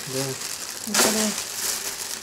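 Thin black plastic parcel bag crinkling and rustling as gloved hands pull and twist it open, loudest in a burst about a second in.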